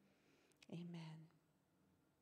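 Near silence, broken once by a woman softly saying "amen" about two-thirds of a second in.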